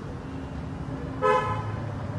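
A brief horn-like toot a little over a second in, over a low steady hum.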